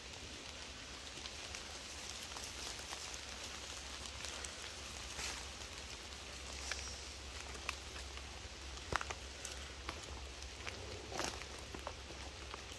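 Faint woodland ambience: a soft steady hush with a few scattered light ticks and rustles.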